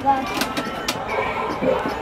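Indistinct background voices, with two sharp clicks in the first second.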